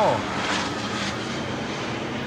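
Dassault Falcon 900 business jet passing low overhead on approach, a steady jet-engine noise.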